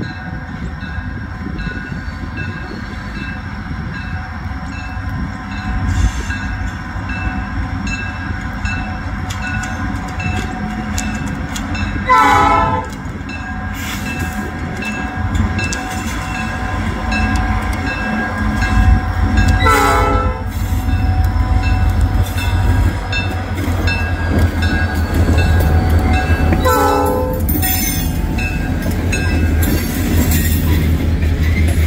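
Illinois Central diesel locomotive leading a freight train approaching and passing, its engine rumble growing louder. It sounds its horn in three short blasts about seven seconds apart, while a faint high ding repeats steadily about twice a second.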